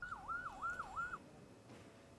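A faint emergency-vehicle siren yelping, its pitch sweeping quickly up and down four times over about a second, then cutting off.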